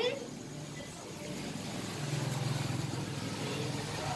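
Low, steady hum of a vehicle engine, a little louder from about two seconds in.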